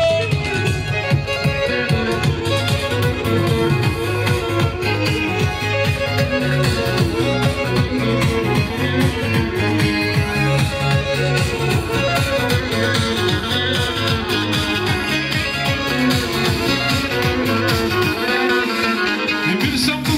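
Lively Black Sea horon dance music led by a kemençe (bowed fiddle) playing a fast melody over a steady driving beat.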